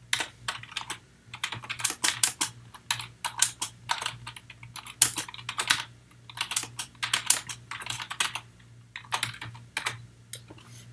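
Typing on a computer keyboard, fast runs of keystrokes in several bursts with short pauses between them.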